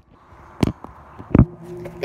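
Two sharp knocks about three-quarters of a second apart as a phone is handled and propped up to film; a faint, low, steady hum starts just after the second knock.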